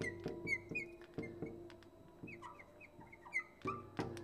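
Felt-tip marker squeaking on a glass lightboard while writing an equation, in many short, high chirps. Soft background music runs underneath.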